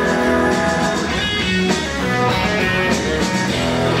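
Live country band playing an instrumental passage led by electric guitar, with drums keeping the beat.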